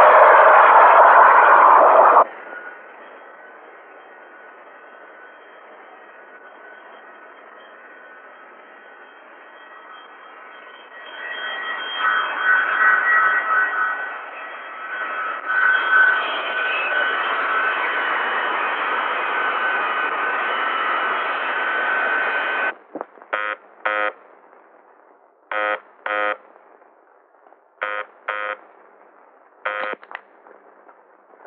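Jet airliner engines running: loud for the first two seconds, then a quieter hiss, rising again about eleven seconds in with a steady whine. Near the end the engine noise cuts off and an electric bell or buzzer rings in short bursts, mostly in pairs.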